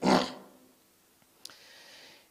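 A man's short, rough breath sound close to a handheld microphone, fading within half a second. A small mouth click follows about a second and a half in, then a faint in-breath before he speaks again.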